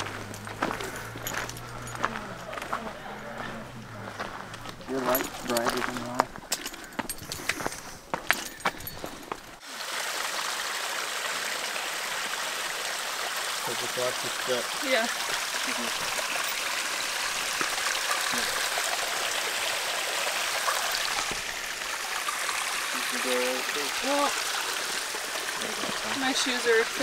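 Footsteps on a rocky trail, then the steady rush of a mountain stream, which starts suddenly about ten seconds in, with faint voices over it.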